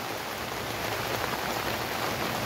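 Steady rain falling, an even hiss with no distinct knocks or clicks.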